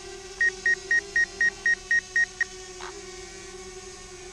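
A rapid run of about nine short, high electronic warning beeps, four a second, from a drone's controller or app, over a steady hum.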